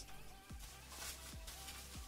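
Faint background music, with a couple of soft crinkles from bubble wrap being handled.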